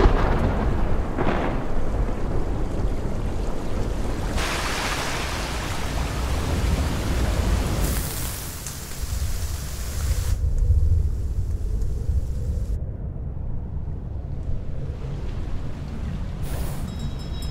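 Heavy rain with thunder, over a deep rumble. The rain's hiss swells and drops away suddenly at several points and thins out after about ten seconds, while the low rumble carries on.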